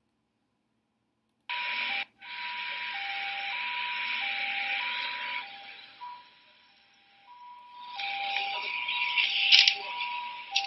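Two-tone siren alternating between a high and a low note about every two-thirds of a second, starting after a second and a half of silence, over a rushing noise. A few sharp cracks stand out near the end.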